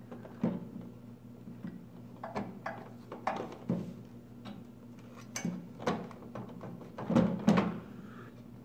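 Scattered clicks, taps and light knocks of plastic parts being handled and fitted while a microwave's control panel is reassembled, the loudest cluster near the end.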